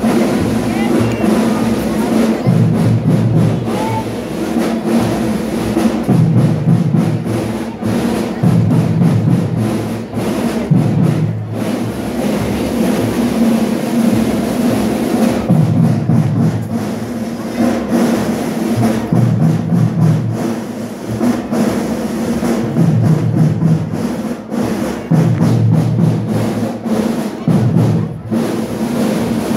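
School marching band of drums and horns (banda de guerra) playing: a steady snare and bass drum beat under low, held horn notes that return in a repeating phrase every few seconds.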